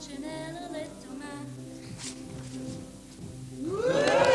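A girl singing a short unaccompanied phrase over a steady low held tone, which then carries on alone. Near the end a group of voices breaks in with a loud cry that glides up and then down.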